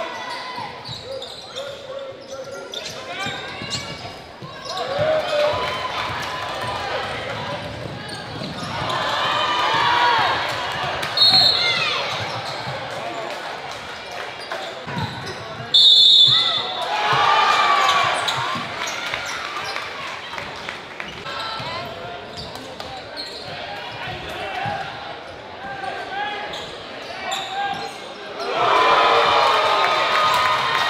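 Live basketball game sound in a gym: crowd voices and shouting with a ball dribbling on the court, and two short shrill whistle blasts, about eleven and sixteen seconds in.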